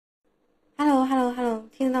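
A woman's voice speaking into a microphone, starting under a second in after near silence, with a drawn-out first syllable and then quick questioning speech.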